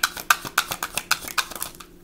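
A deck of tarot cards being shuffled by hand: a quick run of sharp papery clicks that stops just before the end.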